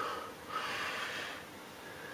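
A man's soft, breathy exhale lasting about a second, then faint room noise.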